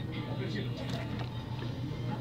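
Steady low hum with faint background music, the ambience of a shop interior.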